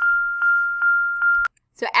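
A steady high-pitched tone held for about a second and a half, with faint regular ticks about twice a second, cut off suddenly.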